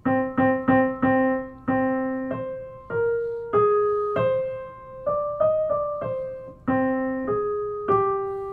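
Piano playing a single-line melody, one note at a time, stringing short motives together. It opens with a figure of repeated notes on one pitch, then notes step higher and back down before the repeated-note figure returns near the end.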